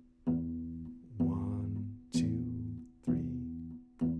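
Acoustic steel-string guitar, four thumb-plucked bass notes on E played about one a second as a steady bass, each ringing and fading before the next.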